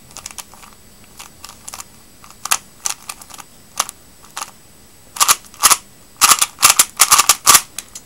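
Plastic 3x3 puzzle cube being turned by hand: sharp clicks and clacks of its layers snapping round. The clicks are scattered at first, then come in a quick flurry about five seconds in as an OLL algorithm is executed at speed.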